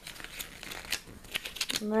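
Paper rustling and crinkling as a folded paper card and an instruction booklet are handled, with scattered short crackles.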